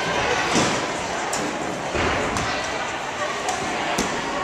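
Spectators' voices chattering in a gym, with a dull thump about half a second in and another about two seconds in.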